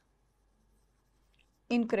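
Very faint writing on a board, almost silent, then a woman's voice near the end.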